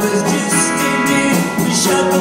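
A live rock band playing a song, with electric guitars, bass and drums, recorded from the audience.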